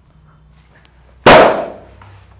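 A single sudden, very loud bang about a second and a quarter in, dying away over about half a second.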